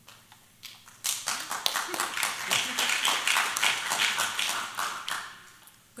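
Audience applause: many hands clapping, starting about a second in, then dying away shortly before the end.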